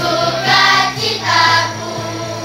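A children's choir singing a Christmas song together over a steady instrumental backing, with sung notes swelling loudest about half a second and a second and a half in.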